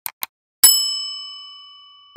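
Subscribe-button sound effect: two quick mouse clicks, then a single bell ding that rings on and fades away slowly.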